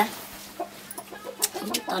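A few short clucks from a chicken in a pause between words, with a woman's voice coming back in near the end.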